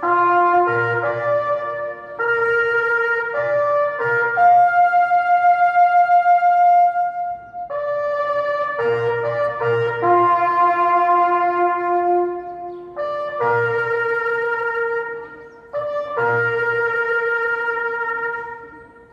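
Slow, solemn brass melody led by a trumpet, with notes held for a second or two in phrases broken by short pauses. It is music played during a minute's silence of respect.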